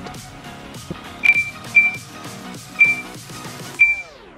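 Four short, high beeps of the same pitch from a smartphone app's countdown timer, counting down to an automatic photo capture, over background music.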